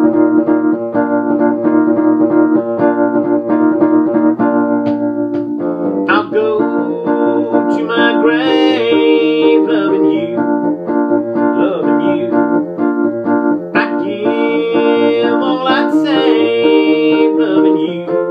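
Wurlitzer electric butterfly baby grand piano playing sustained chords as a song's opening. A man's voice comes in over the piano about six seconds in, singing wavering held notes.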